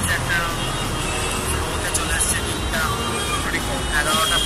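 A man's voice speaking in short phrases, over steady street traffic noise.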